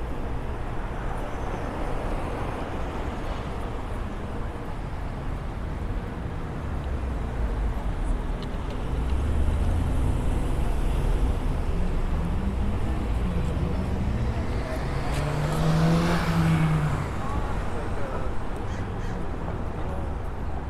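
City traffic at a busy intersection: cars driving through, swelling louder as vehicles pass close, about halfway through and again around three-quarters of the way. People's voices are heard nearby.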